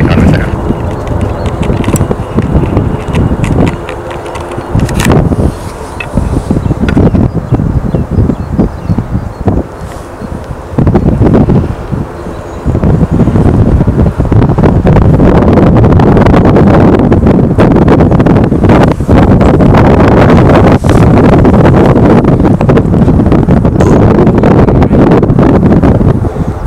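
Strong wind buffeting the camera microphone: gusty rumbling noise that comes and goes at first, then turns steady and loud from about halfway.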